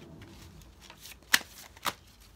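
A tarot deck shuffled by hand, quiet at first, then two sharp card slaps about half a second apart in the second half.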